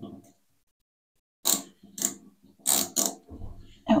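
Screwdriver turning the screw of a bathtub's metal drain strainer to remove it: four short, sharp metallic clicks about a second and a half in, then a low rumble near the end.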